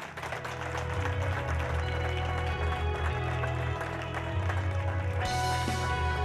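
Audience applauding, with background music with a steady bass running under it.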